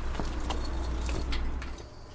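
A car engine idling as a low steady rumble, with scattered light metallic clicks and rattles from the wrought-iron gate being handled. The engine rumble drops away just before the end.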